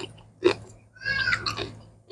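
Close-up eating sounds of a person chewing, with a sharp mouth click about half a second in and a short pitched nasal vocal sound a second in.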